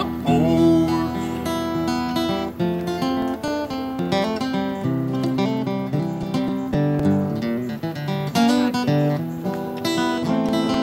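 Steel-string acoustic guitar playing a solo instrumental break, a picked melody of changing notes over strummed chords.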